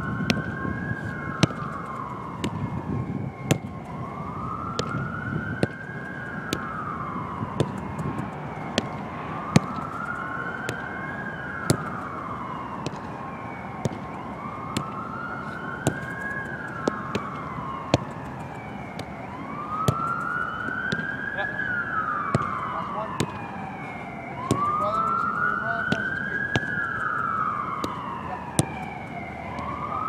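A wailing emergency-vehicle siren, its pitch rising and falling in a slow cycle about every three seconds, with sharp knocks scattered throughout.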